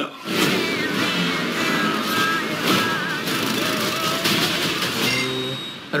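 Film-trailer sound mix of music with a car engine revving, and a low held note about five seconds in.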